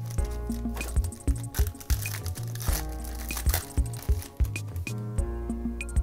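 Background music with a steady, repeating beat. About halfway through, a foil card pack crinkles as it is handled and opened.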